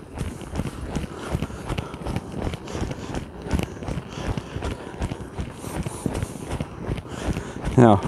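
A horse trotting on soft sand arena footing, its hoofbeats a quick, continuous run of thuds. The horse has been pushed up from a slow pleasure trot into a faster working trot.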